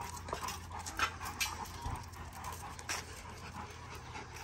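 Rottweilers panting, with a few short clicks spread through.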